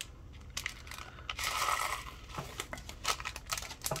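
Loose crystal rhinestones poured from a small plastic tray into a thin plastic zip bag: many small clicks as the stones tumble against each other and the plastic, and the bag crinkling. There is a denser rush of rattling about one and a half seconds in.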